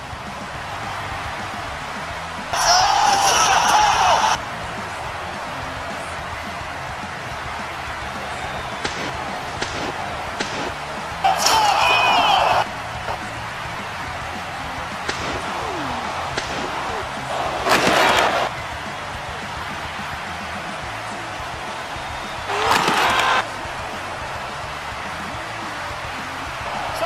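Dubbed wrestling sound effects for a stop-motion action-figure match: a steady background bed broken by four loud slam-like hits, each lasting one to two seconds, roughly every five to six seconds.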